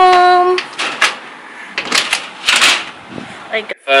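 A woman's voice held on one drawn-out note for about half a second, followed by scattered clicks and rustling noise, with talking again near the end.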